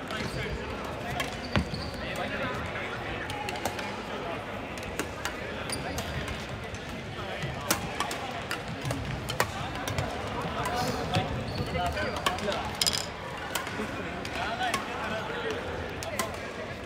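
Scattered sharp racket hits on shuttlecocks from badminton rallies on the surrounding courts, with occasional short squeaks of court shoes on the wooden floor, over a background of players' voices in a large sports hall.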